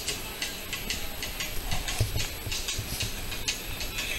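Steady rapid ticking, about four clicks a second, with a few low thumps about two seconds in.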